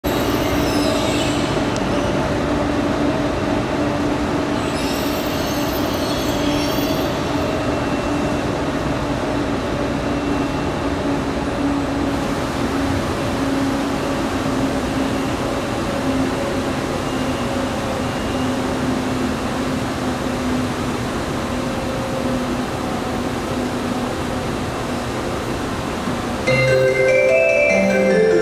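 Steady rumble of a railway station platform with a low, even droning hum that does not build, and brief high hissing sounds near the start and again about five to seven seconds in.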